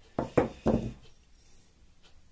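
Three quick knocks in the first second as a metal tube is handled and set against plastic pipe fittings on a tabletop, each with a short ringing tail.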